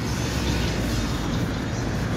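Steady road traffic noise: a continuous low rumble of passing vehicles along a busy road.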